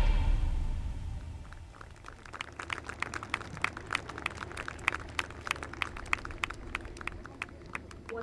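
Festive music fading out, then scattered applause from a seated crowd: separate hand claps, several a second, from about two seconds in.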